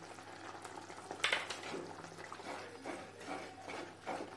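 A wooden spoon stirring thick tomato-onion gravy in a clay pot, with irregular soft scrapes and knocks of the spoon against the pot; the strongest scrape comes about a second in.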